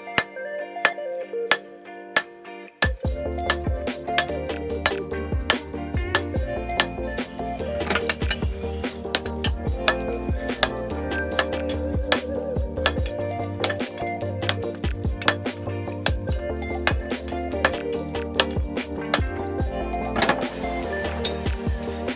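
Repeated hammer blows on hot steel against an anvil, with sharp metallic clinks, as a knife tang is drawn out. Background music plays underneath.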